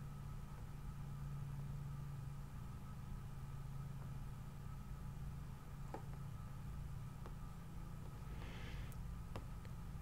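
Quiet room tone with a low steady hum, a few faint computer mouse clicks, and a soft breath about eight and a half seconds in.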